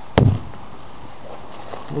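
A single sharp knock against the ice-coated car body, about a quarter second in, short and loud with a brief dull ring.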